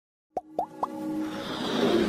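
Motion-graphics logo intro sound effects: three quick plops in succession, each sweeping upward in pitch, then a musical riser swelling louder.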